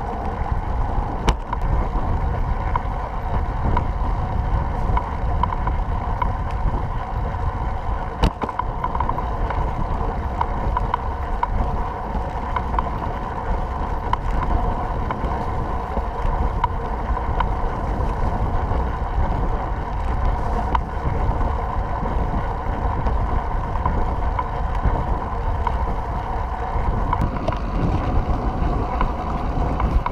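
Wind noise on the microphone of a camera mounted on a moving recumbent trike, over the trike's steady rolling and drivetrain noise. Two sharp knocks, about a second in and about eight seconds in.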